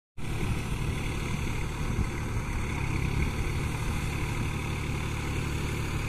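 New Holland 4710 Excel 4WD tractor's diesel engine running steadily under load as it works through a flooded, muddy paddy field, heard from a distance as a low, even rumble.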